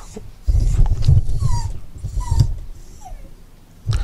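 Small curly-coated dog whining in three short, high, falling cries, a dog asking to be let outside. A louder low rumble of handling noise runs under the first two.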